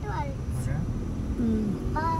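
Steady low rumble of a moving vehicle, with brief bits of talk over it.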